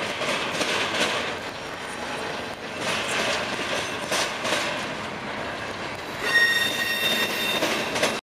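Double-stack container freight train rolling past close by, its wheels running over the rail with a few sharp clunks. About six seconds in, a steady high-pitched wheel squeal joins the rolling noise for over a second.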